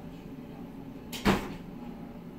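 A single short clunk about a second in, over a steady low hum.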